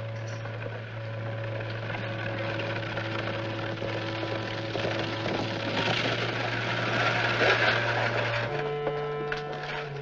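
Orchestral film score holding a low sustained note that shifts pitch near the end, over the clatter of a two-horse carriage arriving, loudest about seven seconds in.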